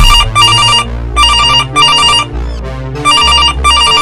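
Telephone ringing in a double-ring pattern: three pairs of short, trilling rings, one pair about every second and a half.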